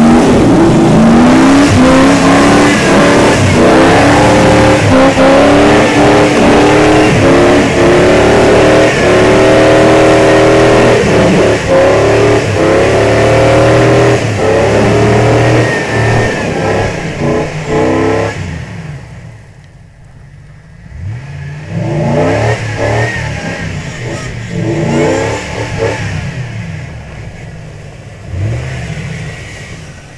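Full-size Ford Bronco's engine revving hard and repeatedly under load as the truck climbs a snowy trail, the pitch rising and falling. About two-thirds of the way through it drops away sharply for a moment, then comes back quieter, still revving.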